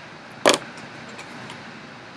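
A single short, sharp knock about half a second in, over steady room tone.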